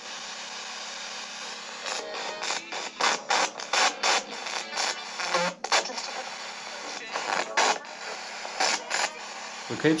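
Handheld spirit box sweeping radio frequencies: a steady static hiss broken by short, choppy bursts of radio sound, often several a second.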